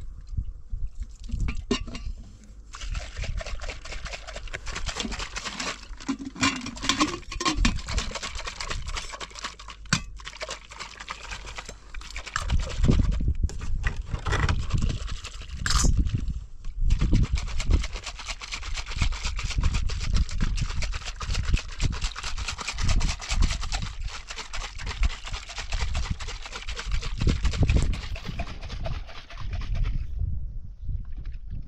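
Wind buffeting the microphone in uneven gusts, over tea being poured into small glasses, with occasional clinks of the glassware.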